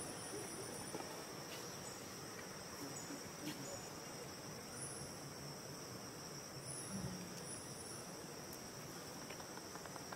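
Steady, high-pitched insect chorus droning without a break, with a few short high chirps scattered through it.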